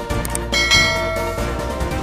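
A bell-like chime sound effect rings out about half a second in and fades over about a second, over background music. Two faint clicks come just before it.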